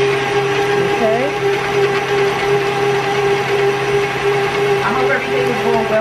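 Electric stand mixer running steadily with an even motor hum, its beater creaming a block of cream cheese in a stainless steel bowl.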